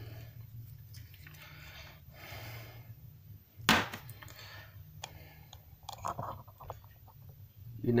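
Quiet handling sounds from a fishing lure being worked over with a cotton pad: a soft rubbing about two seconds in, then a single sharp knock near the middle as the lure is set down on a plastic sheet, followed by a few light clicks. A steady low hum runs underneath.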